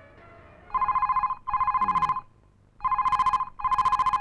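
Telephone ringing with a double ring: two pairs of short, trilling rings about two seconds apart, the first starting under a second in and the last running on past the end.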